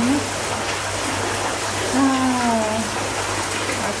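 Hot spring water splashing steadily into an outdoor rock bath, an even watery hiss. About two seconds in, a woman gives a brief hum that falls in pitch.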